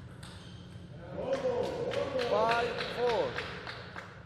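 Table tennis ball clicking off rackets and the table in a rally, about three sharp hits a second, with voices shouting loudly from about a second in as the point is won.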